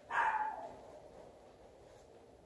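A dog barks once just after the start, a short call that falls in pitch.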